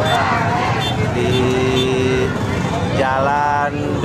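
Crowded street convoy of motorcycles and shouting football supporters, a continuous din of engines and voices. A horn sounds one steady held note for about a second, and a raised voice calls out near the end.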